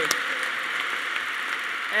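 Audience applauding steadily after a punchline.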